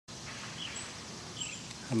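Quiet outdoor ambience with a few short, faint high chirps in the first second and a half; a man starts speaking at the very end.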